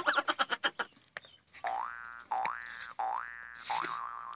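Cartoon-style comedy sound effects: a rapid stutter of pulses fading out in the first second, then three rising whistle-like glides, each about half a second long.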